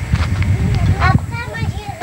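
A mare's hooves clip-clopping as she steps about, with voices over it in the second half.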